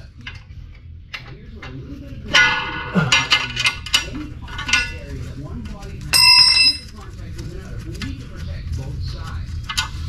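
Metal hand tools clinking against the torque converter bolts. There is a sharp ringing clink about two and a half seconds in and a run of smaller clinks after it. Just past the middle comes a clear bell-like metallic ring of about half a second.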